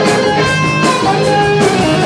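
Live rock band playing an instrumental passage, led by an electric guitar playing a few long held notes over drums and bass.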